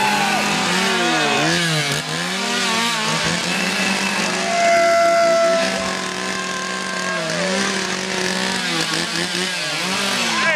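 Two handheld two-stroke chainsaws, a red one and a white one, running and being revved over and over, the engine pitch rising and falling, with people yelling over them.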